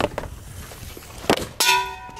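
A hockey stick strikes the puck about a second into the shot, and a moment later the puck hits metal with a loud ringing clang, a shot off the post. There is a sharp knock near the start as well.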